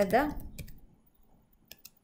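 Computer keyboard keystrokes: a few short separate clicks as a word is typed, two about half a second in and a quick run of three near the end.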